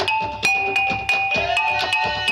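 Dance accompaniment on traditional tuned percussion: ringing pitched notes struck in a quick, steady rhythm, about four to five strokes a second.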